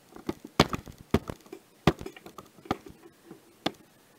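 Handling noise as the camera is picked up and moved: an irregular run of about ten sharp clicks and knocks, the loudest about half a second and two seconds in.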